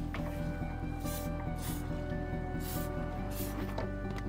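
Background music, with four short hissing bursts of an aerosol insecticide spray between about one and three and a half seconds in.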